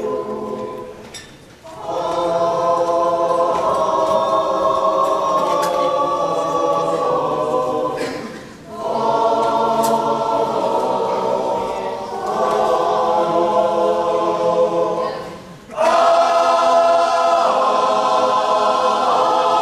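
Mixed men's and women's chorus singing sustained chords in harmony, in long phrases separated by short breath pauses every six or seven seconds.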